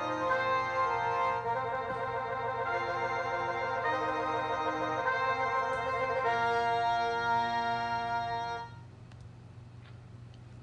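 Finale notation software's computer playback of a drum corps brass arrangement: sustained synthesized brass chords with a rapidly wavering, trilled passage in the middle. The playback stops about nine seconds in, leaving faint clicks over a low hum.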